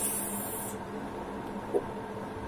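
Palms rubbing together, a short hissy rub lasting under a second at the start, then a brief vocal 'ooh' near the end.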